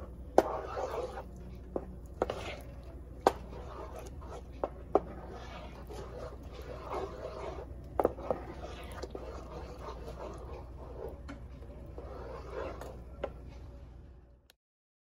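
Spoon stirring a thick tomato and blended-pepper sauce in a pot: irregular clicks and knocks of the spoon against the pot over a wet squelch of the sauce. A steady low hum runs underneath.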